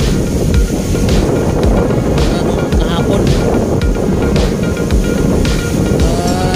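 Wind buffeting the phone's microphone with a steady low rumble, over background music.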